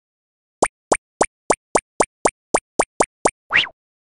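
Eleven quick cartoon plop sound effects, nearly four a second, then a short upward swoop near the end, from an animated title sequence.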